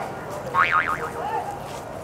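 A short comic 'boing'-style sound with a tone that wobbles quickly up and down in pitch, about half a second in, with faint voices around it.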